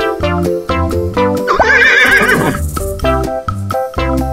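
A horse whinnying once, a quavering call of about a second starting about a second and a half in, over bouncy background music with a steady beat.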